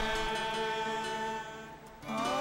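Voices singing a long-held "Amen" on sustained notes that fade near the end, with the next chord entering just after.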